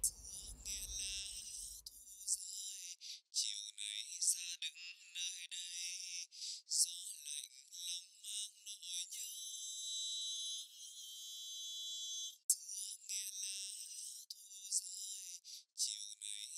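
A sung vocal heard only in its top band, above about 2 kHz, as isolated while setting a de-esser: a thin, faint, buzzing rasp of the voice in which the s-sounds and breaths stand out.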